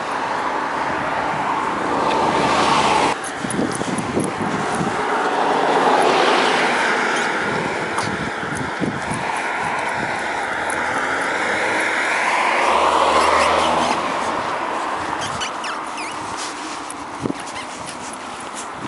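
Steady rushing noise of a bicycle moving along asphalt, wind and rolling-tyre noise on a handlebar-mounted camera, swelling and easing over several seconds, with scattered light clicks.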